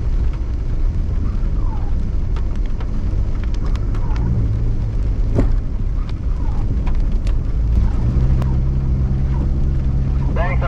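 Vehicle driving on a wet dirt road, heard inside the cab: a steady low rumble of engine and tyres, with scattered sharp clicks and knocks from the road surface. The engine note strengthens about eight seconds in.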